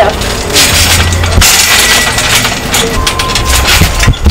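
Loud rushing noise with a low rumble, from wind buffeting the microphone, over a person bouncing on a trampoline. A few knocks on the trampoline mat come near the end as a one-arm back handspring goes over.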